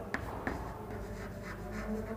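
White chalk writing on a chalkboard: a couple of sharp taps in the first half-second, then a run of faint, short scratchy strokes.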